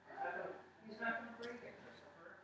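Soft, quiet speech: a voice murmuring a few words, well below normal talking level.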